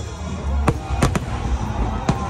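Aerial fireworks shells bursting overhead: three sharp bangs, one under a second in and two close together just after the one-second mark, over a steady low rumble.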